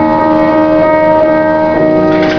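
Euphonium holding a long note over piano accompaniment, with the piano sounding a new chord near the end.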